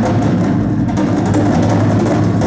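Live percussion ensemble playing: military snare drums with mallet percussion and a drum kit, over steady low sustained notes.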